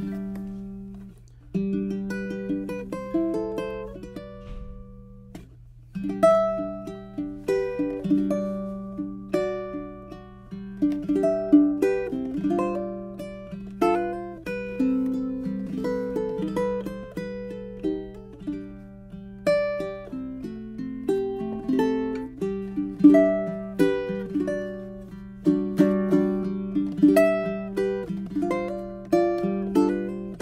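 Kala all-flame-maple tenor ukulele played solo fingerstyle, single plucked notes and chords ringing and dying away. It starts softly with a couple of short breaks, then about six seconds in the playing grows louder and busier.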